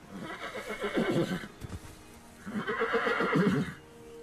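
A horse whinnying twice, each call lasting about a second and a half, with the second starting about halfway through.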